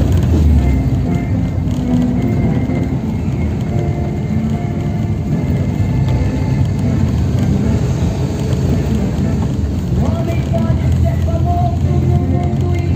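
A car driving slowly along a street, its engine and road noise making a steady low rumble, with music playing faintly over it; near the end held notes in the music come through more clearly.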